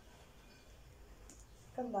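Quiet room tone with a faint light click or two from hands handling a tape measure on fabric.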